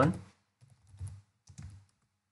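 A few faint keystrokes on a computer keyboard, spaced roughly half a second apart, as a word is typed.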